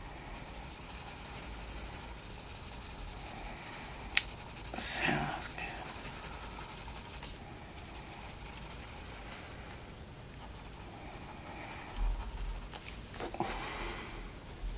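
Derwent Coloursoft coloured pencil shading on smooth, shiny colouring-book paper: a steady run of strokes. A sharp click comes about four seconds in, with a short louder sound just after it.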